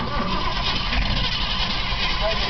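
Ford 302 V8 running through its dual exhaust, picked up right at the tailpipe: a steady low rumble with a rush of exhaust noise that comes in suddenly at the very start and then holds even.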